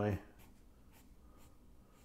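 Pencil lead on paper: a few faint, short scratching strokes as a small oval eye is sketched.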